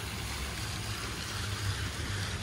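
Steady hiss of water running down a tiled stepped fountain.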